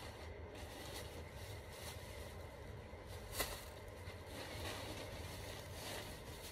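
Quiet, steady low room hum with faint rustling and handling noise, and one short sharp click about three and a half seconds in.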